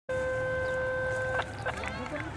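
A steady horn blast on one unchanging pitch that cuts off abruptly about a second and a half in, followed by faint crowd chatter.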